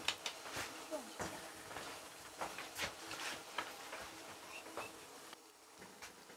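Scattered light knocks and clicks: footsteps on a wooden floor and dishes handled as people carry sausage on a glass plate over to the stove, with faint murmured voices.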